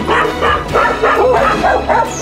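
Dog barking in quick repeated barks, about four a second.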